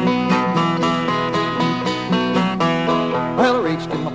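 Instrumental opening of an American folk song: a five-string banjo and an acoustic guitar picking a brisk, even rhythm before the singing comes in.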